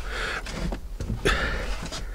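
Handling noise of a van's front passenger seat backrest being folded down flat: two short bursts of fabric rustle and shuffling from the seat and its folding mechanism.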